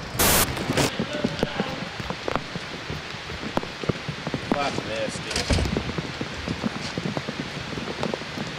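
Rain falling steadily, a constant hiss with many small drop ticks on hard surfaces. A short sharp burst sounds about a quarter second in.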